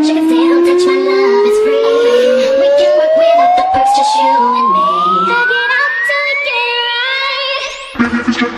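Khmer club remix music with a long synth sweep that climbs steadily higher and faster. Near the end the music thins out and dips in level as the build-up peaks.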